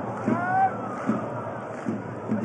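Football stadium crowd: a steady din from the stands, with single voices calling out over it in rising and falling shouts.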